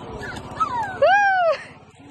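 A small dog whining: a short falling whine, then a louder, longer whine that rises and falls, about a second in.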